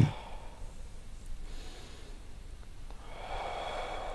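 A man taking slow deep breaths through the nose: a faint breath about a second and a half in, then a longer, louder one from about three seconds.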